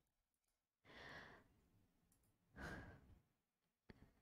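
Faint breathing close to a microphone: two long breaths out, like sighs, about a second and a half apart, then a short click just before the end.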